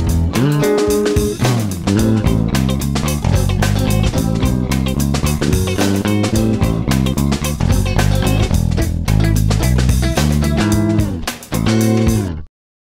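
Playback of a multitrack song recording: a drum loop and bass guitar under clean electric guitars. The Stratocaster part has a chorus effect, and early on a guitar slides down the neck in falling glides, meant to sound like an organ player running down the keys.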